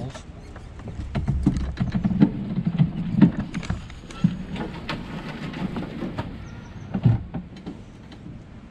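Golf cart rolling over concrete, with a rumble and a quick, irregular string of clicks and knocks as the cart and its mounted camera jolt and rattle.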